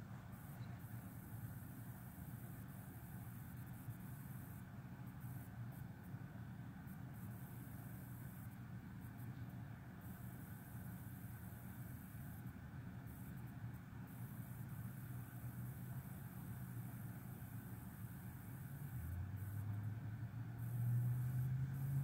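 Faint room tone: a steady low hum with hiss. A louder, deeper hum comes in about three seconds before the end.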